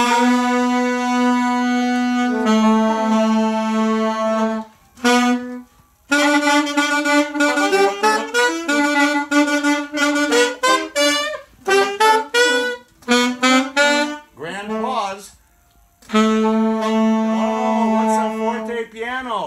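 A small section of student alto saxophones playing in unison. They hold long notes at first, then play a faster passage of changing notes, broken by a couple of short pauses, and end on another long held note.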